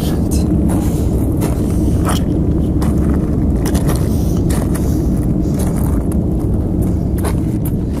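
Uneven footsteps crunching on loose rock and gravel, over a loud steady low rumble.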